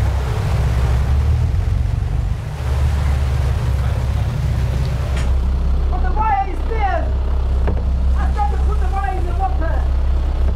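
Steady low engine rumble of a harbour launch. Voices are heard indistinctly over it in the second half.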